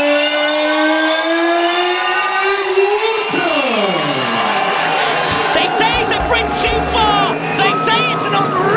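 A ring announcer's long drawn-out call into a microphone, held for about three seconds and slowly rising in pitch before it drops away. Entrance music then starts, with a heavy beat from about six seconds in.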